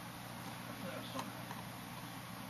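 Quiet room tone on a webcam microphone: a steady low hum and hiss, with one soft click a little after a second in.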